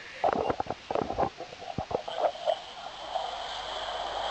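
Handling noises: a run of short knocks and rustles in the first second and a half, then a few scattered clicks, over steady street background noise.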